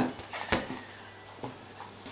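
Quiet room tone, with a brief faint click about half a second in.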